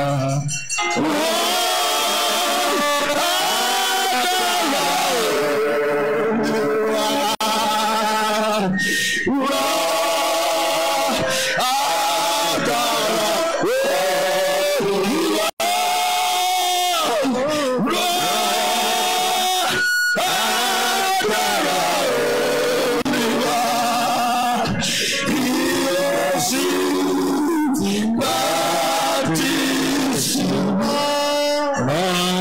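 Worship singing with music: a sung melody of long, held notes that slide from one to the next, going on without a break except for a brief dropout about halfway.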